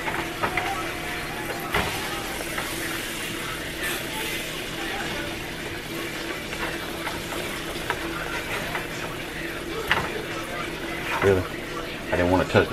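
Breaded country-fried steaks sizzling steadily in shallow oil in a skillet, with a silicone spatula scraping and knocking against the pan a few times as the steaks are turned over.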